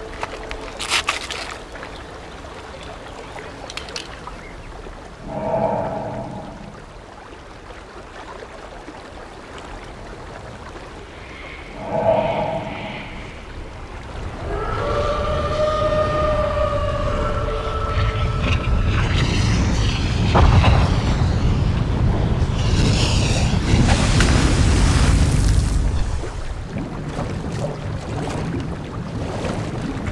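Film sound design and score: two short swells with tones, then a long, loud, deep rumbling build with held tones layered in. It drops back a few seconds before the end.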